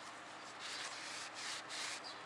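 Cloth rag rubbed over an Isuzu 4JA1 diesel piston, a few wiping strokes: one longer stroke, then shorter, quicker ones near the end.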